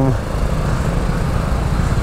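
A motorcycle running as it moves off at low speed, a steady low rumble mixed with wind noise on the microphone.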